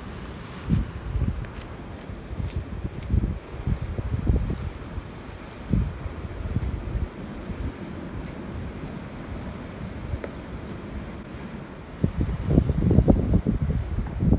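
Wind gusting against the microphone in irregular low rumbles, strongest near the end, over a steady wash of sea surf.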